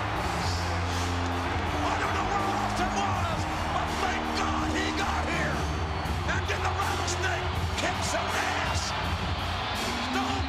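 Wrestling entrance theme music playing loudly through an arena's speakers over a big crowd cheering and shouting, as the match ends.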